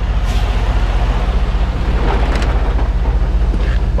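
Diesel engine of a semi truck idling steadily, a low even rumble.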